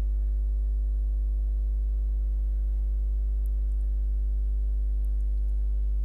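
Loud steady electrical hum at mains frequency, about 50 Hz, with a ladder of weaker overtones, unchanging throughout.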